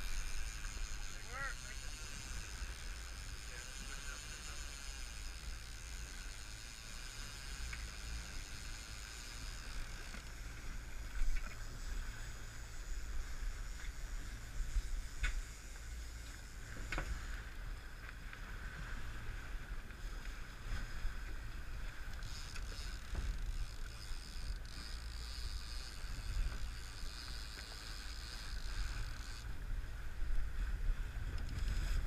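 Steady low rumble of wind and choppy sea around a small fishing boat, with a few short sharp clicks about halfway through.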